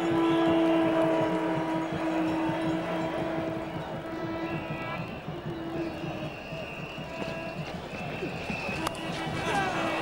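Music from the stands at a cricket ground, with long held notes, over the steady background noise of the crowd.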